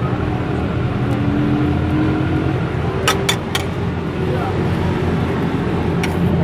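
Steady low rumble of street background noise, with faint voices and three sharp clicks a little after three seconds in.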